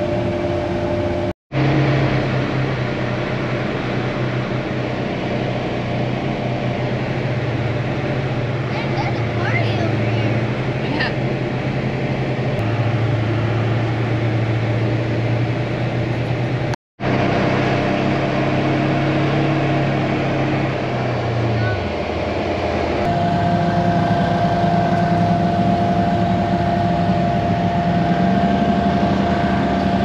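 Engine of the Honda-swapped Polaris RZR side-by-side, heard from on board while it drives a dirt trail. It runs at a steady drone that drops in pitch about three-quarters of the way through, then rises again with the throttle.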